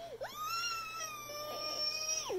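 A young child's long, high-pitched squeal held on one steady note, rising at the start and dropping away near the end.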